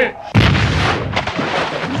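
A sudden loud blast sound effect about a third of a second in: a burst of rushing noise that dies away over about a second, with a second, sharper hit shortly after.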